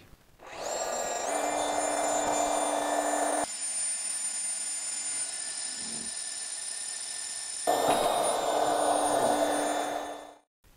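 FEIN AKBU 35 cordless magnetic core drill's brushless motor spinning up with a rising whine, then running steadily with several high whining tones as a 25 mm core cutter bores through steel plate. The sound changes abruptly about three and a half seconds in and changes back near eight seconds.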